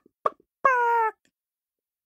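A woman imitating a hen: a couple of short clucks, then one drawn-out, high, slightly falling squawk of about half a second.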